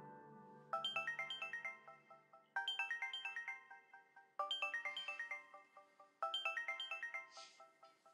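Mobile phone ringtone: a quick run of bright, plinking notes repeated four times, about every two seconds. At the start the tail of soft piano music fades out, and there is a brief rustle near the end.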